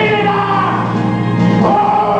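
Live stage-musical singing: a choir and orchestra, with a man's voice singing held notes.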